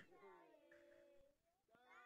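Near silence, with only a faint trace of a pitched voice or singing far in the background.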